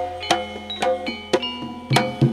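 Live Javanese gong-and-drum ensemble playing a steady rhythm of about three strikes a second: struck gongs ring on with clear pitched tails between sharp drum strokes, over a low sound-system hum.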